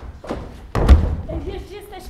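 A heavy thump on the stage about a second in, followed by a child's voice calling out.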